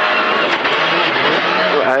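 Rally car engine running at speed, heard from inside the cabin over a steady rush of tyre and road noise from the dirt surface.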